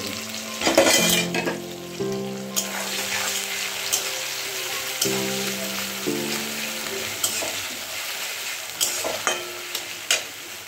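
Onions sizzling in hot oil in a metal karahi, with a louder burst of sizzle about a second in as more food is tipped into the pan. A metal spatula then stirs, scraping and clicking against the pan every second or so.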